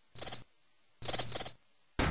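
Three short, high chirps in near silence: one, then a quick pair about a second later, like a cricket chirping.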